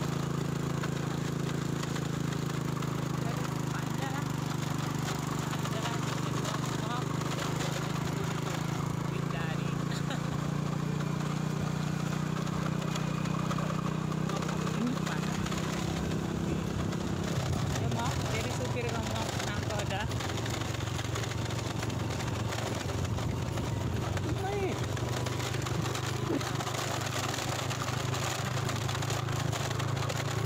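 Motorcycle engine running steadily while riding, with wind and road noise; the engine note drops a little past halfway and holds at the lower pitch.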